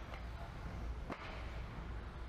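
A single sharp crack about a second in from a 1/10-scale RC car hitting the clay track or its plastic pipe, over a steady low hum.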